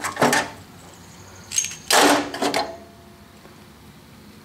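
Brass fittings and regulator parts knocking against each other and the sheet-steel toolbox as they are handled. A few light knocks come first, then a short metallic ring, then a louder ringing clank about two seconds in.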